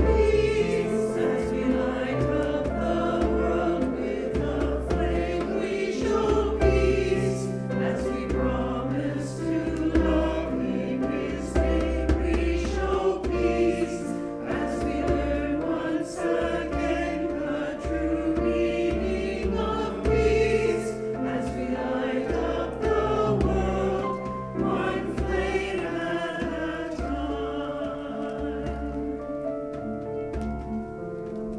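A congregation singing a hymn refrain together over steady instrumental accompaniment.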